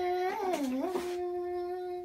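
A woman singing one long note: the pitch dips and comes back up in the first second, then holds steady.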